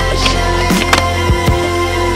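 A song with a steady beat plays over a skateboard grinding along a ledge and rolling on concrete, with a few sharp clacks of the board.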